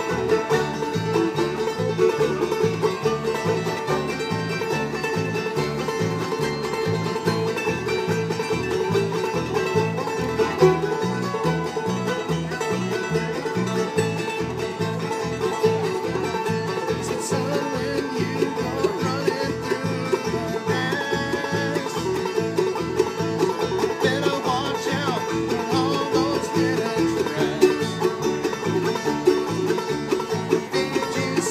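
Live acoustic bluegrass string band playing a tune: banjo picking over an upright bass playing a steady alternating bass line, with another string instrument.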